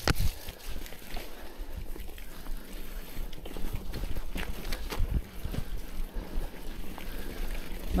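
Marin Larkspur bicycle's tyres rolling through mud and puddles, with an irregular low rumble of wind buffeting the action camera's bare built-in microphone and scattered knocks and rattles from the bike.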